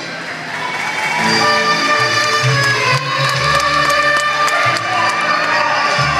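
Live Mexican folk music through the stage speakers, with some crowd cheering and applause. The music is quieter for the first second, then comes back with held notes over a deep bass line.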